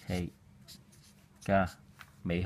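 Felt-tip marker writing on paper, faint strokes between two short spoken syllables from a man's voice, the second one louder, about a second and a half in.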